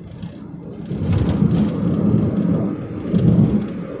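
Rumbling road and engine noise of a moving vehicle heard from on board, swelling louder about a second in.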